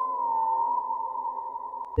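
Eerie electronic drone music: a single sustained high tone that wavers slightly in pitch about a third of a second in, fading towards the end, with a brief click just before it stops.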